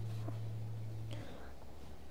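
A low steady hum that cuts off abruptly just over a second in, with faint soft noises underneath.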